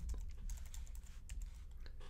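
Computer keyboard typing: a quick, even run of keystrokes as a password is typed in.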